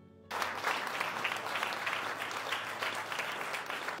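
Audience applauding, a dense clatter of many hands clapping that starts suddenly about a third of a second in and breaks off abruptly at the end.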